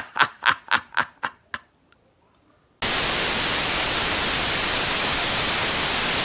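A man laughing, about four bursts a second, fading out over about a second and a half. After a short pause comes a loud, steady hiss of TV static.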